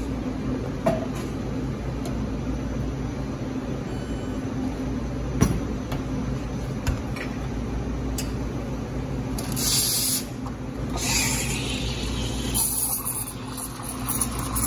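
Rancilio Classe espresso machine humming steadily while a shot extracts, with a few light clicks and knocks. About ten seconds in come two short bursts of steam hiss from the steam wand, and more hissing near the end as milk steaming begins.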